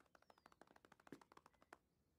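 Faint, quick patter of a small child's running footsteps on pavement, about nine light taps a second, stopping shortly before the end.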